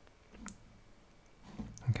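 A single sharp computer mouse click about half a second in. A man's low voice starts just before the end.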